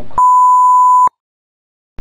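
Censor bleep: a single steady tone lasting just under a second, covering a redacted word. It is followed by about a second of muted audio.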